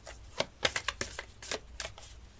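A deck of cards being shuffled by hand: a quick, uneven run of short papery flicks and snaps.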